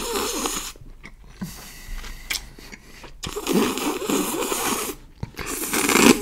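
Close-miked slurping of noodle soup: long, noisy drawn-in slurps near the start, from about three and a half seconds in, and again near the end, with small sharp mouth clicks from chewing between them.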